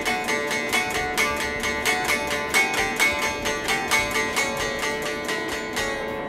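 Electric guitar picking a repeating intro riff: a quick, even run of single notes, about five a second, ringing over one another.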